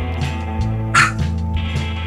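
Maltese puppy giving one short, high yap about a second in, a protest bark demanding to be let back to her mother, over background music.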